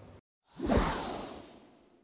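A single whoosh sound effect marking the transition to the end screen. It swells in about half a second in and fades away over the next second, with a low tone sliding downward beneath the hiss.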